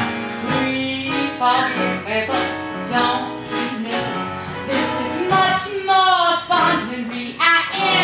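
A woman singing a musical-theatre show tune with vibrato over instrumental accompaniment with a steady beat.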